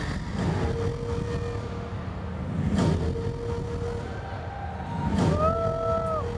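Stadium concert sound heard from the crowd through a phone microphone: a dense low rumble with three long held tones, the last joined by a higher bending note near the end.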